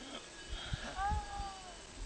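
A short animal-like pitched call that rises slightly and then falls, starting about a second in and lasting under a second, with a few low thumps just before it.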